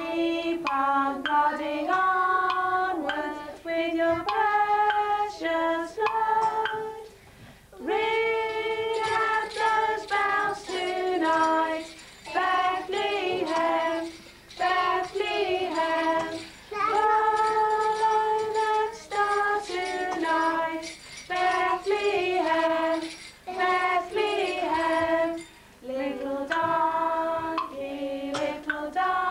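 A group of women and young children singing a Christmas song together, in phrases with long held notes and a short pause about seven and a half seconds in.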